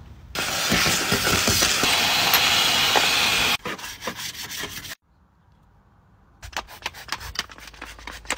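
A loud steady hiss for the first three seconds or so, then a stiff brush scrubbing a car's floor and interior in short, rough, rapidly repeated strokes, broken by a brief near-silent gap.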